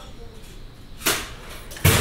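Two sudden knocks over a low background hum, about a second in and again near the end; the second is heavier, with a low thump.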